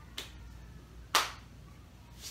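Two sharp snaps from the quick arm strikes of a Wing Chun Chum Kiu form, a small one at the start and a much louder one about a second in.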